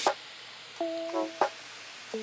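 A short phrase of background music, a few plucked or keyboard notes about a second in, over a faint steady hiss of baking-soda-and-vinegar foam fizzing.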